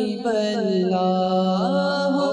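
A man singing a Bengali naat, an Islamic devotional song, unaccompanied into a microphone. The melody is held and ornamented, gliding between notes over a steady low drone.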